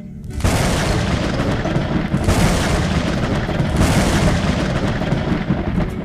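Thunder rumbling loudly over heavy rain, starting about half a second in, surging twice and easing off near the end.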